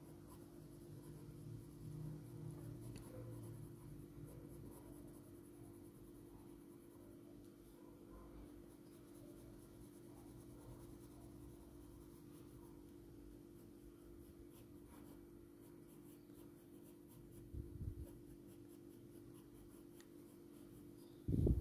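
Faint scratching of a soft 4B graphite pencil laying short, repeated fur strokes on paper, over a steady low hum. There is a brief low bump near the end.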